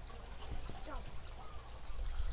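Faint voices over a steady low hum: a lull between a teacher's spoken drills in a kindergarten classroom.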